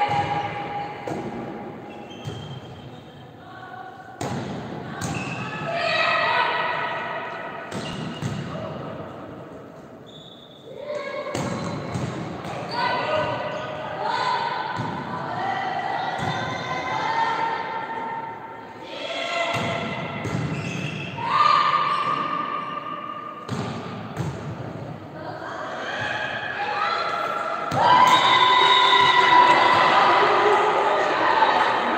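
Volleyball rally in an echoing sports hall: the ball thudding off players' arms and hands and the floor, among girls' voices shouting and calling, which grow loudest in the last couple of seconds.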